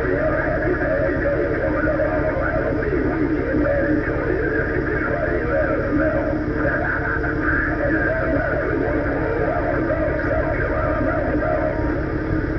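CB radio speaker carrying a long incoming transmission on channel 18, most likely skip from a distant station. The signal opens abruptly just before and runs unbroken, narrow-band radio audio with a mix of music-like and voice-like sound, over a low steady rumble.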